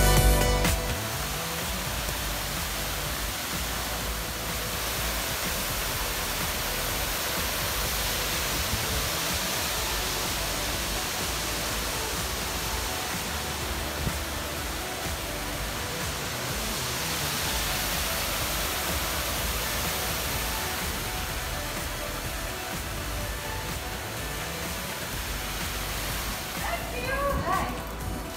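Steady rushing of a shallow stream running over rocks, an even hiss with no change in level. Background music cuts out just after the start.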